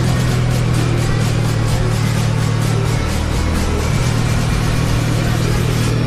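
Engine of a TVS Apache 200 motorcycle, a single-cylinder four-stroke, running steadily at cruising speed, with music playing over it.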